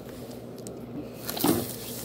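Quiet handling noise as a small steel drawer safe, wrapped in plastic, is pulled out of its cardboard box, with one short louder rub or knock about one and a half seconds in.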